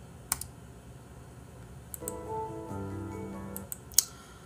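A few sharp clicks at a computer: one just after the start and a small cluster near the end. Between them, from about halfway through, a short passage of soft music lasts about a second and a half.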